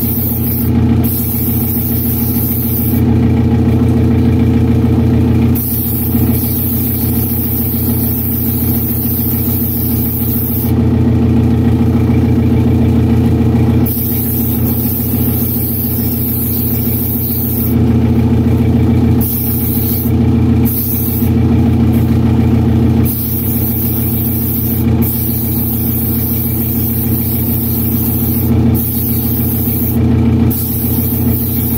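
Steady hum of a paint spray booth's exhaust fan, with a gravity-feed airbrush hissing in spells of a few seconds as paint is sprayed.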